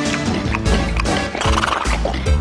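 Cartoon background music with a horse whinny sound effect about one and a half seconds in.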